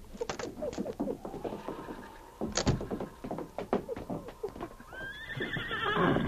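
Radio-drama sound effects of horses: scattered hoof knocks and clopping, then a horse whinnying near the end in a rising call.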